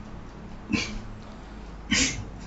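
A man coughing twice into his fist, about a second apart.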